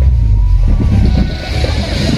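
Loud, deep, steady rumble of vehicles, with music mixed in.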